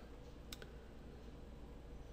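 A computer mouse button clicking once, faintly, about half a second in, over faint room hiss.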